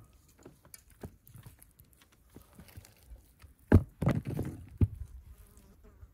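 Raw beef being handled on a wooden cutting board and cut with a knife: scattered soft knocks, with one sharp thud and a short run of heavier knocks a little past the middle.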